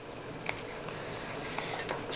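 Quiet room with a steady faint hiss and a few light ticks, one about half a second in and a couple of fainter ones near the end, from hands handling a thread-sewn paper book.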